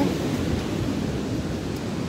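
Wind buffeting a phone's microphone: a steady low rumble.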